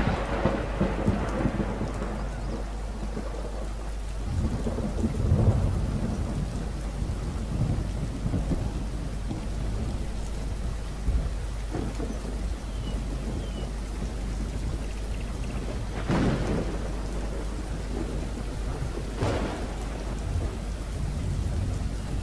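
Steady low hum under an even rushing noise, with a few louder rumbling swells.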